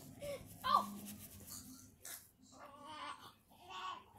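Several soft, high-pitched vocal sounds, short and bending in pitch: one about a second in and a run of them near the end.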